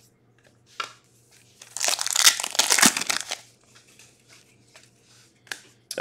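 Trading cards sliding and flicking against each other as a stack is flipped through by hand. There is a short click about a second in, a rustle lasting about a second and a half around the middle, then a few light ticks.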